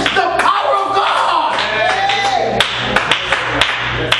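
Voices calling out and singing in a church service, then a few sharp, irregular hand claps in the second half.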